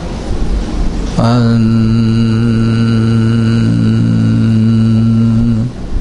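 A man's voice sings one long, steady note of a devotional song into a microphone. The note starts about a second in with a short slide up to pitch and holds for about four and a half seconds before breaking off.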